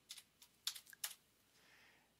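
A few faint computer keyboard keystrokes, about five clicks in the first second or so.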